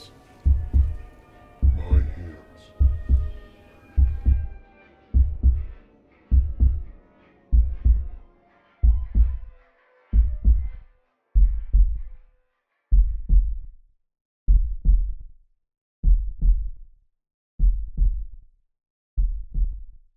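Heartbeat sound effect: low double thumps that slow steadily from about one a second to about one every second and a half, the patient's pulse slowing under anaesthesia. A soft sustained tone underneath sinks slightly in pitch and fades out about halfway through.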